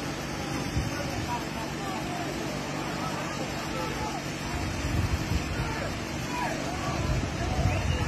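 Faint voices of people calling and shouting over a steady background of noise.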